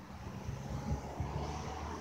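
Low rumble of wind buffeting the microphone, with faint passing traffic on the road.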